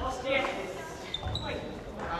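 Voices in a large, echoing sports hall, with two short shoe squeaks on the wooden floor a little after a second in.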